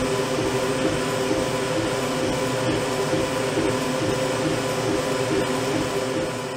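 Ortur diode laser engraver running: its stepper motors whine in short, rapidly shifting tones as the laser head moves back and forth engraving, over a steady machine whir.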